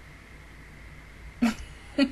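Low, steady background hum, then about one and a half seconds in a single short burst of a woman's laughter, the first of a run of laughs.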